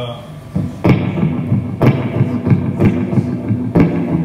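Electric guitar starting a song, with chords struck about once a second, each hit ringing out.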